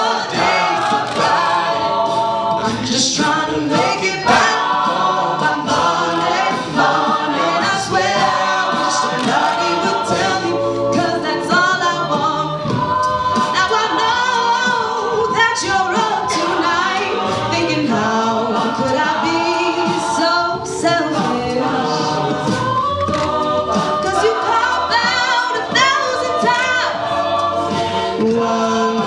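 Mixed-voice a cappella group singing: soloists on microphones over sung harmony from male and female backing voices, with vocal percussion keeping the beat.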